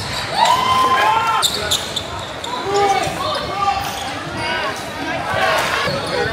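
A basketball bouncing on an indoor gym court during play, with players' and spectators' calls and shouts echoing around the hall.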